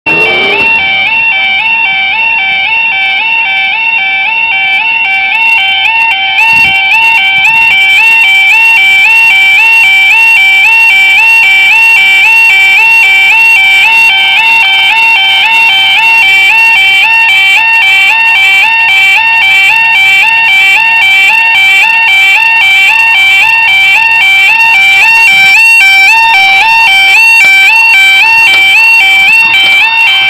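Level crossing warning alarm: a loud, rapidly alternating two-tone electronic warble that sounds while the warning lights show and the barriers come down. It stops suddenly near the end, once the barriers are lowered.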